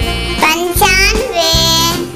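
A child's voice singing a Hindi counting song, the number 'pichaanve' (ninety-five), over a children's music backing track with a steady beat.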